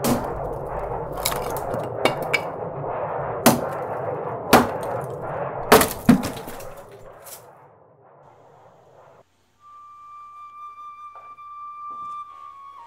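Intro sound design: a rushing noise with a string of sharp cracks and knocks, like breaking wood, fading out. After a short gap a held flute note begins.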